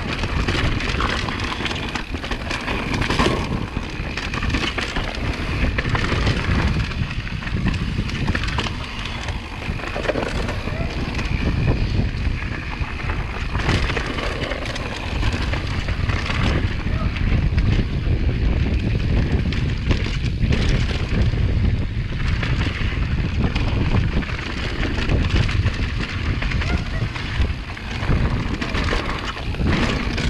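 Wind buffeting the microphone and a mountain bike's tyres rolling over dirt and rocks on a fast descent, with frequent knocks and rattles from the bike over rough ground.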